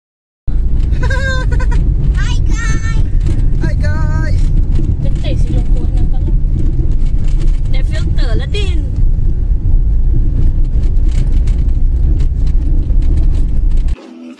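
Car driving on a rough road, heard from inside the cabin: a loud, steady low rumble. A few short wavering voice sounds rise over it in the first nine seconds.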